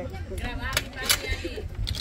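Faint chatter of children's voices with a few sharp clicks or knocks, the loudest about a second in, over a low steady rumble.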